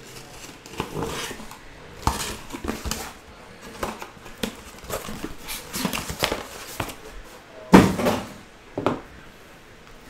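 Cardboard card boxes and their plastic wrapping being handled on a desk: an irregular run of rustles, scrapes and light knocks, with one sharp, louder knock about three-quarters of the way through.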